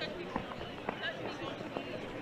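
Spectators' voices in the background, a low murmur with a few brief fragments of speech, broken by several scattered light knocks.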